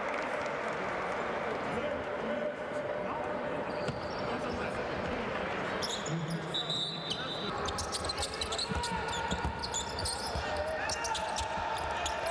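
Basketball dribbling on a hardwood court, the bounces getting busier in the second half, with players' voices in the background.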